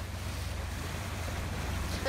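Floodwater in a flooded street sloshing and splashing around a vehicle, a steady noisy wash over a constant low rumble.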